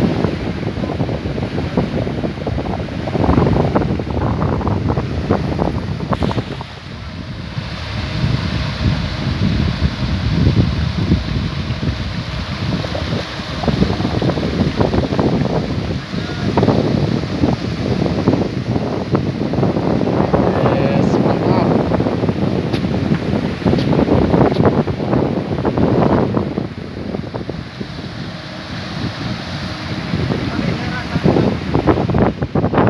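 Wind buffeting the microphone in uneven gusts, with people talking in the background.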